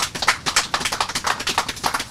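A small crowd applauding: many hands clapping in a quick, irregular patter.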